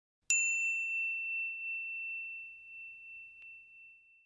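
A single bell-like ding, struck once just after the start, ringing in one clear high tone that slowly fades away over about four seconds, as an intro chime over the logo.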